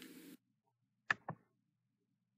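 A single computer mouse click, with the button pressed and then released about a fifth of a second later, about a second in. The rest is near silence.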